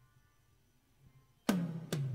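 Near silence, then about a second and a half in a karaoke backing track starts with two sharp percussive hits, each followed by a low ringing tone.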